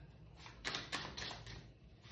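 A tarot deck being handled in the hands, with a few light card clicks and taps as the cards are shuffled and squared.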